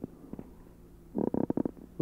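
A man's short, rough throat noise, a rapid crackly rasp lasting about half a second, comes a little past the middle of a pause in his speech. Under it runs the steady low hum of an old tape recording, with a couple of faint clicks.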